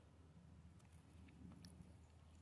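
Near silence: a faint low hum with a few faint ticks.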